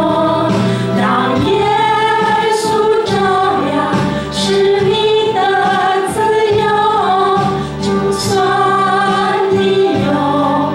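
A small group of women singing a Mandarin Christian worship song together into microphones, the voices holding long notes in a continuous line.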